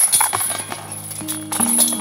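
Background music cutting in suddenly: the opening of a song, with quick percussive taps and held notes coming in about a second in.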